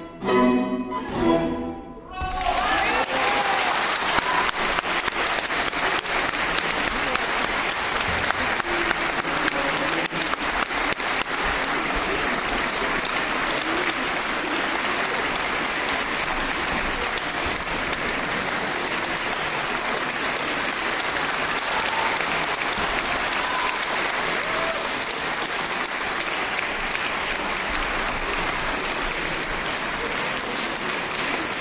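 A concert hall audience applauding steadily after the last short chords from a string quartet and a plucked solo instrument, which stop about two seconds in.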